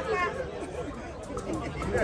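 People chatting, several voices overlapping, quieter in the middle and picking up again near the end.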